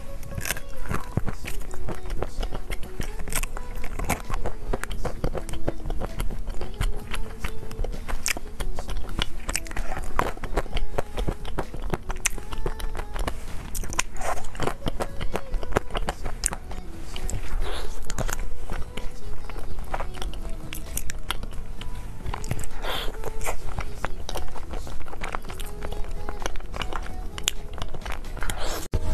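Crunching and biting into chocolate, with many sharp, irregular cracks close to the microphone. Background music with a simple stepping melody plays under it.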